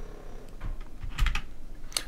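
A few separate keystrokes clicking on a computer keyboard.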